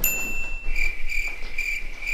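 A high-pitched chirping tone that begins abruptly, holds steady for under a second, then pulses about three times a second, like a cricket sound effect laid over the picture.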